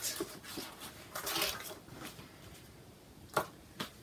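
Faint rustling and scraping of a paper score sheet and pencil being handled, followed near the end by two sharp clicks about half a second apart.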